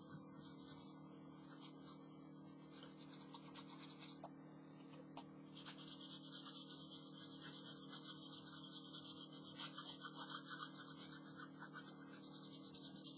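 Graphite pencil shading on sketchbook paper: fast, faint scratchy back-and-forth strokes. They stop about four seconds in and resume a second and a half later.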